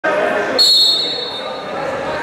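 Referee's whistle blown once to start the wrestling bout: a high, steady tone that starts suddenly about half a second in and fades after about a second. Voices in the hall come before it.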